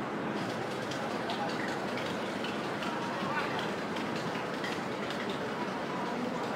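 Steady babble of many people talking at once at crowded outdoor restaurant tables, no one voice standing out, with scattered faint clicks.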